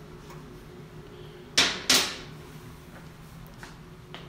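Two sharp knocks in quick succession, about a third of a second apart, over a steady low hum.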